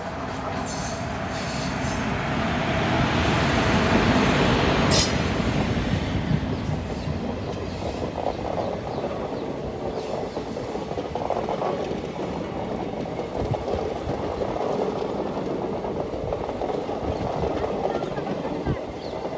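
Passenger train hauled by an electric locomotive passing close by: the rolling noise builds to its loudest about four to five seconds in, with a sharp click there, then settles into the steady rumble of its coaches running past.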